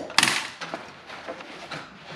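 A hammer tacker strikes once, sharply, driving a staple through the house-wrap sheet into the wooden post just after the start. A few faint clicks and rustles follow.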